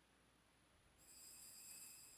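Near silence: room tone, with a faint high-pitched hiss and thin whine that comes in about halfway through.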